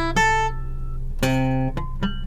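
Acoustic guitar: a chord plucked three times and left ringing between plucks.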